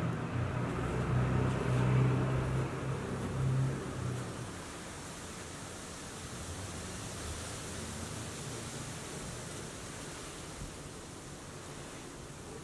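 Steady outdoor background noise: a low hum fades out about four seconds in, leaving an even hiss.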